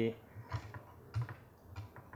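Several faint, irregular clicks, like keys being pressed on a laptop keyboard, as a presentation is moved on to the next slide.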